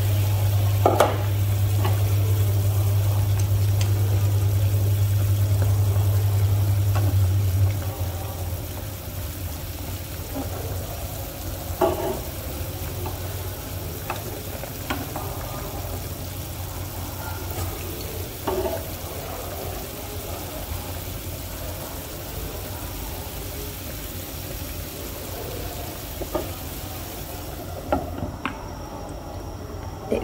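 A steel pot of broth boiling hard with the lid off, a steady bubbling, with a few light knocks of chopsticks against the pot. A low steady hum runs under it and stops about seven seconds in.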